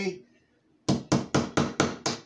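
A run of quick, sharp tapping knocks, about four a second, starting about a second in: a hand tool used as a hammer on the metal tines of a homemade frog gig.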